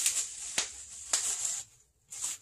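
Clear plastic wrapping crinkling and rustling in gloved hands as a new camshaft is unwrapped, with a few sharp crackles.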